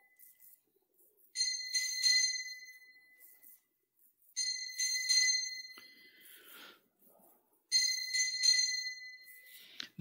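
Altar bells shaken in three short peals about three seconds apart, each ringing out and fading away. They mark the elevation of the consecrated host at the consecration.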